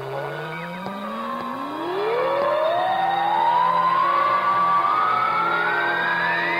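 A long electronic sound-effect tone sliding steadily upward in pitch over a bed of steady droning tones, part of a synthesized radio break bumper.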